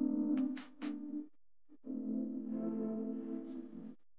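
Soft background music of sustained, held tones in two phrases, broken by a short pause about a second and a half in.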